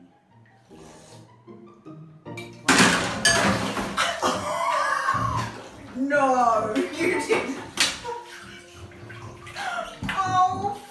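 Soft background music, then about three seconds in a sudden loud splashing and sloshing of water in a full bathtub as a man plunges into it. His voice cries out over the splashing.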